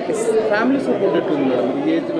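Speech: a woman talking, over a background of crowd chatter.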